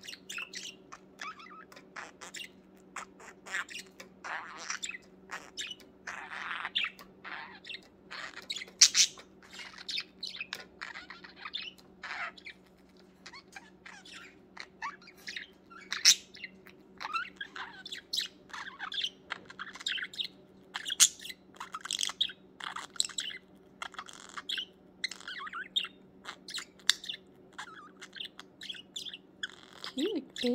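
Budgerigar warbling and chattering: a continuous, busy stream of short chirps and clicks, with no pauses of more than a second or two. A faint steady low hum runs underneath.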